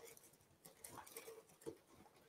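Near silence, with faint rustling and a few light ticks of paper slips being stirred by hand inside a plastic draw box, about a second in.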